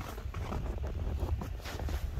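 Wind on the microphone outdoors, a low steady rumble.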